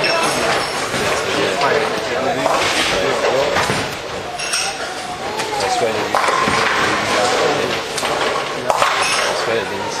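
Bowling alley hubbub: a steady chatter of many voices, with scattered clinks and a sharp clatter of pins near the end.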